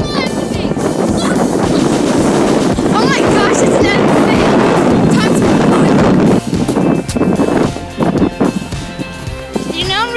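Wind buffeting the microphone, loud for about the first six seconds and then easing off. A child's high voice squeals briefly about three seconds in.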